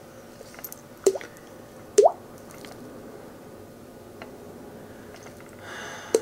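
Mouth-made water-drop sounds: a finger flicked against the cheek over rounded lips gives two short bloops with a quick rise in pitch, about a second apart.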